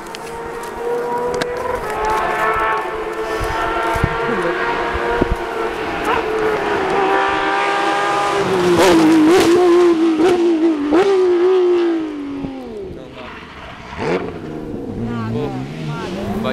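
Rally car at full speed on a closed asphalt stage, its engine growing louder as it approaches and passing close by with the pitch rising and dipping through the gears. The engine note then drops in pitch and fades as it goes away, with a short sharp crack about two seconds later.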